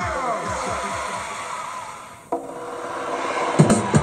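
Music from a Technics SC-HD51 mini hi-fi system's speakers: an electronic dance track fades down, then about two seconds in it cuts abruptly to another song with steady held notes and a few sharp thumps near the end.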